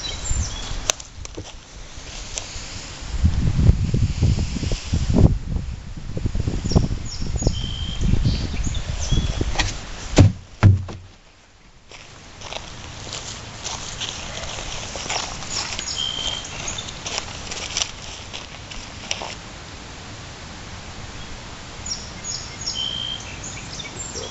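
Footsteps and handling knocks from about three to ten seconds in, with a sharp thump near ten seconds, as a garbage can of fine sawdust is emptied onto a fire pit. After that comes a steady outdoor background with short bird chirps now and then.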